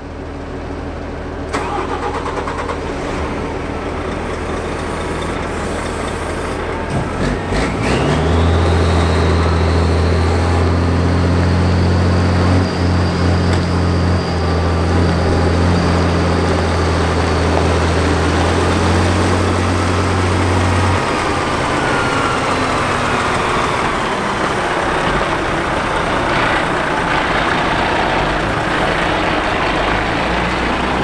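The diesel engine of a MAN F90 35.372 8x8 truck running. About eight seconds in it settles into a steady low drone with a high whine above it, and the drone drops away after about twenty seconds.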